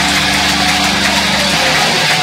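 Loud distorted electric guitars and bass through stage amplifiers, droning on held notes in a steady wall of sound.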